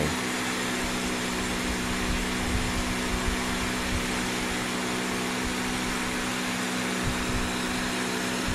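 Large computer cooling fan under an LED heatsink running steadily: a constant rush of air with a steady low hum.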